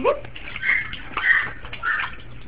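A duckling giving three short, harsh calls in quick succession, the sound called its "barking".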